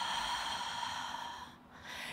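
A woman's long, audible exhale through the mouth, fading out about a second and a half in: a paced out-breath taken while arching the spine backward in a breathing-led stretch.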